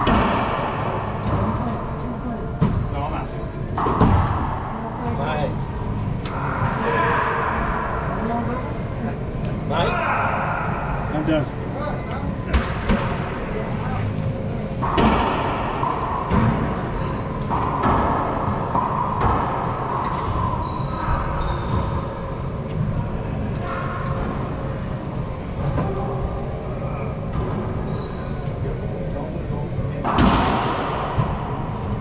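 Racquetball play in an enclosed court: several sharp cracks of racquets hitting the ball and the ball striking the walls, each ringing in a strong echo, with players' voices in between.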